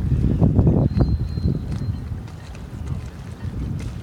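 Wind buffeting the microphone on a slowly motoring boat, over the low drone of the boat's engine. The buffeting is heaviest in the first second or so and eases after about two seconds.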